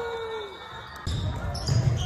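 A gym scoreboard buzzer holds one steady note that sags slightly and dies away about half a second in. After an abrupt change about a second in, a basketball bounces on the hardwood court amid echoing gym noise and voices.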